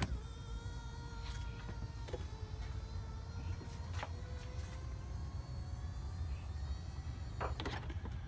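Electric seat motors of a 2016 Ford Explorer Platinum's power-folding third-row seats whining steadily as they raise both seatbacks from stowed to upright. There are a few light clicks along the way and a click as the motors stop near the end.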